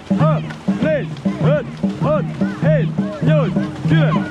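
Dragon boat crew racing at full pace: rhythmic shouted calls keeping stroke time, one roughly every 0.6 seconds, over paddles splashing and water rushing past the hull.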